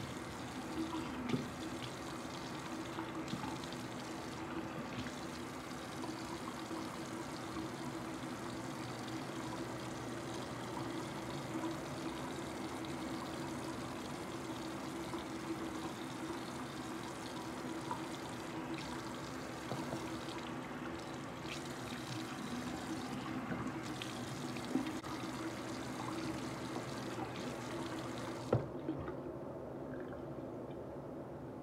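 Bathroom sink tap running steadily while hands scoop and splash water onto a face, with a few small knocks. Near the end the running water stops with a click.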